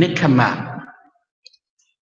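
A monk's voice speaking one phrase of a sermon for about a second, then a pause with a faint click.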